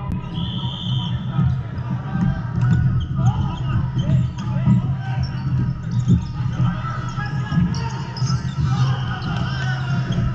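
Volleyballs being hit and bouncing on a hardwood gym floor in a large hall full of play, with short sharp impacts over a constant din of voices and activity from the surrounding courts.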